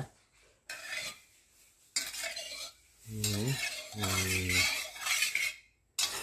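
Metal wok and cooking utensils clattering and scraping on the stove as the wok is readied with oil for frying, in short bursts separated by quiet. Two short low steady hums come around the middle.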